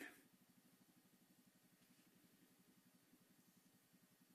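Near silence in a parked car's cabin with the engine switched off: faint room tone.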